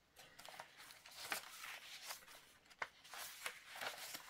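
Faint rustling of paper pages and cards being handled, with a few light ticks and taps, as a page of a handbound paper journal is turned.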